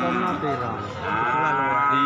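Cattle mooing: one long, drawn-out moo that starts about halfway through, its pitch rising a little and then falling.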